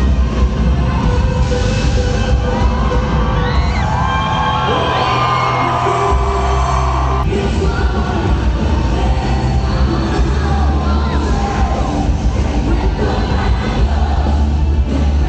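A live band playing loud through an arena PA, with the crowd cheering and whooping. The bass drops away for a few seconds near the middle, then the full band comes back in suddenly about seven seconds in.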